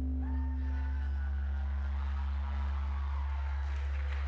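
Sustained droning tones over a steady low hum, fading out one by one. A short wavering whistle-like tone sounds near the start, and a hiss grows towards the end. No marimba notes are struck yet.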